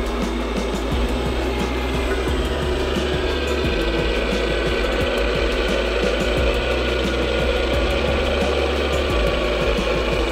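Steady whir of the electric motors and propellers of a four-engine radio-control B-17 model as it taxis on the ground.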